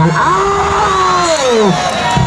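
A man's long drawn-out 'ohh', one held vowel lasting about a second and a half that sinks in pitch and drops away at the end: the football commentator exclaiming over play in front of the goal.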